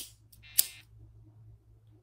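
Two short, sharp clicks about half a second apart, the first the louder, over a faint steady low hum.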